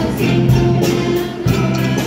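A group of children singing together in an African-style song, backed by a live band with djembe hand drums, a drum kit and guitars; drum strokes fall about a second apart under the held sung notes.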